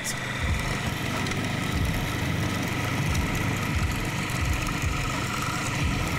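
Electric food processor running steadily with a high motor whine, churning ingredients in its bowl.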